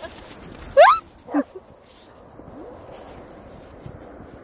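A dog playing in snow gives two short yelps about a second in, the first rising sharply in pitch and the second falling, with soft crunching of steps in snow behind.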